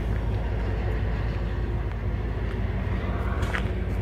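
Steady low rumble of outdoor background noise, with a faint click about three and a half seconds in.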